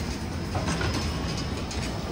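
Steady street traffic noise: a low rumble of vehicles moving along the road, with a few faint ticks and knocks.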